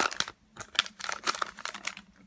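A stack of Pokémon trading cards being handled, the cards sliding and tapping against one another: a run of light clicks and rustles, with a brief pause about a third of a second in.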